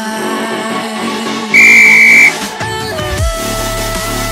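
Background electronic music, with one loud, steady, high beep lasting under a second about one and a half seconds in: the workout timer's signal to start the next exercise interval.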